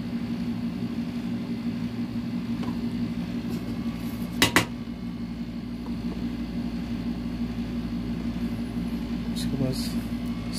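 Steady low electrical hum in a small room, with two sharp clicks close together about halfway through.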